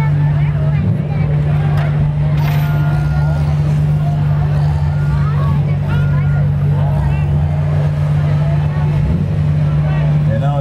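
Engines of demolition derby cars and a Cat skid steer loader running in a steady, unbroken low drone, with scattered voices from the crowd.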